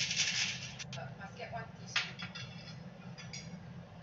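A few light clinks of tableware (cutlery, tongs and dishes), the sharpest about two seconds in, over a steady low hum.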